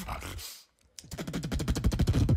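Beatboxer performing: vocal beats cut out briefly about half a second in, then come back as a fast run of clicks and pitched bass tones.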